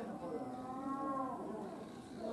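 A person's voice drawing out one long, wavering vowel, with other visitors' talk around it.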